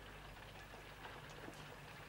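Near silence: a steady low hum and faint hiss with a few soft ticks, the background noise of an old television soundtrack.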